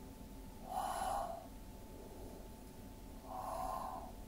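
A woman's audible breaths during a dumbbell curl-and-press exercise: two breaths, one about a second in and one near the end.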